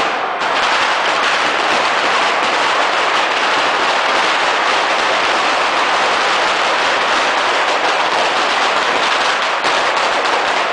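A dense, unbroken barrage of firecrackers going off so fast that the bangs run together into one continuous crackling rattle. This is the firecracker chain set off at the base of a Fallas sculpture to start its burning.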